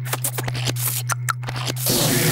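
Cartoon sound effects: a rapid, irregular run of scratchy clicks over a steady low hum, then near the end a loud crackling electric zap begins.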